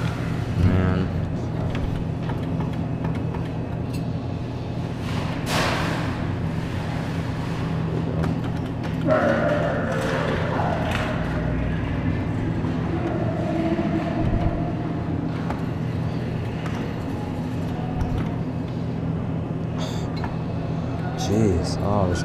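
Arcade room noise: a steady low hum with indistinct voices in the background, and a brief rush of noise about five and a half seconds in.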